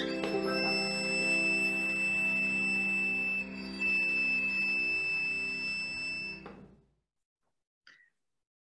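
Church organ music ending on a long held chord that dies away about seven seconds in.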